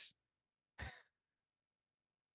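Near silence broken by one short breath from a man close to the microphone, about a second in.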